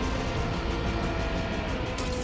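Film soundtrack: music with held, sustained notes over a dense, steady low rumble of action sound effects.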